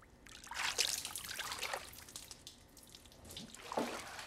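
Water splashing and trickling in uneven bursts, loudest about a second in, with another splash near the end.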